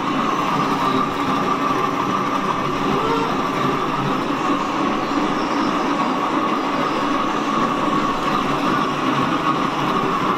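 A steady, even machine-like noise, a continuous rumble and hiss without rhythm or breaks.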